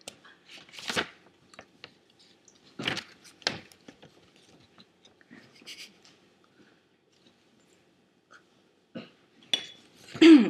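A few short, scattered clicks and rustles, quiet, with gaps between them.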